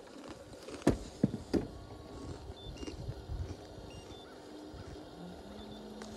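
Sounds of a small boat on the water: a low rumble with three sharp knocks about one to one and a half seconds in, and a steady low hum coming in near the end.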